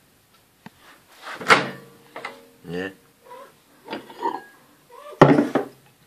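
A few light knocks and clicks of kitchen containers being handled: a stew pot with a glass lid and a glass bowl. The sharpest knock comes near the end. A man's brief mutters and a 'yeah' are heard among them.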